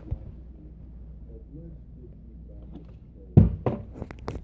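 Two dull thuds about a third of a second apart near the end, followed by a couple of small knocks: a flipped object landing and bouncing on a hard surface during a flip trick.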